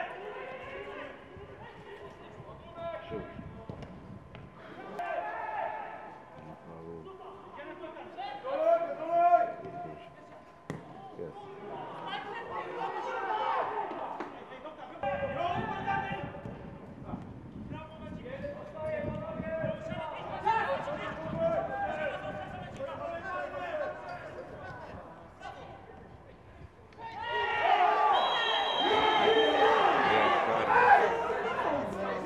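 Football players and coaches shouting across the pitch, with the occasional thud of the ball being kicked. Near the end, several voices shout together, louder.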